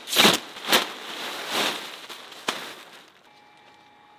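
Nylon fabric of a punctured inflatable octopus rustling and crinkling as it is handled, with a few sharp snaps, dying away after about three seconds.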